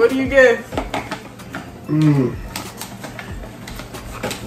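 Irregular crisp clicks and crackles of Pringles potato crisps, with a voice briefly at the start and again about two seconds in.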